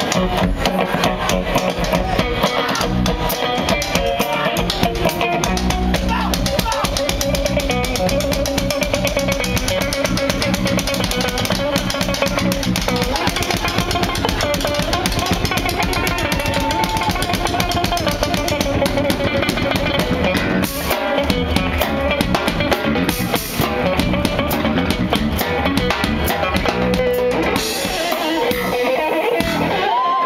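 Live fusion rock trio playing: double-neck electric guitar taking the lead over bass guitar and a drum kit.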